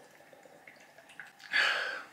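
A man drinking cider from a can, with faint swallowing, then a short breathy exhale as he finishes the drink about one and a half seconds in.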